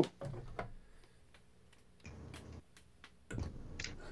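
Sparse, faint clicks and ticks of plastic Transformers action figures being handled and moved, with a faint low hum cutting in and out.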